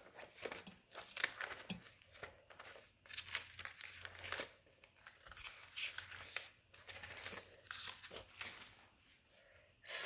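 Thin Bible pages being flipped by hand: a faint, irregular run of soft papery rustles and crinkles, stopping about a second before the end.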